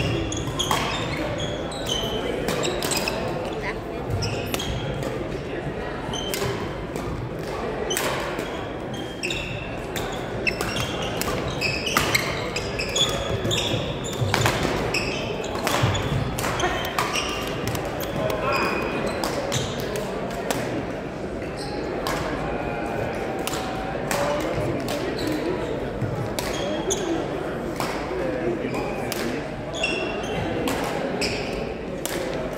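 Badminton rally in a gymnasium: repeated sharp racket strikes on the shuttlecock and sneakers squeaking on the hardwood floor, over indistinct voices echoing in the hall.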